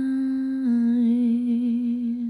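A woman's voice holding one long note. It steps down slightly about two-thirds of a second in and carries on with a gentle vibrato.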